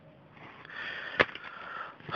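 Faint breathing close to the phone's microphone, with a single sharp click of a plastic CD case being handled a little after the middle.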